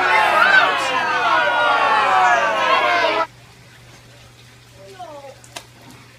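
Several children yelling and shrieking at once for about three seconds, then stopping abruptly, with faint voices after.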